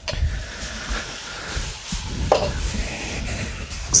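Chicken fillets sizzling in a frying pan as they finish cooking, a steady hiss with low handling knocks underneath.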